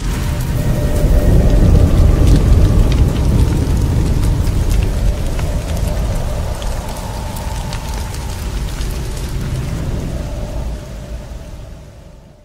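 Cinematic trailer-style sound bed for a "coming soon" title: a deep rumble with scattered crackles and a faint held tone. It swells in the first two seconds and fades away near the end.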